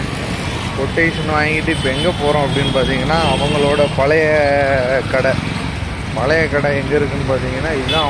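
A man talking over a steady low hum of street traffic.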